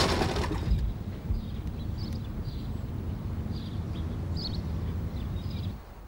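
Outdoor background in a garden: a steady low rumble with a few faint, short bird chirps, after a brief hiss in the first second.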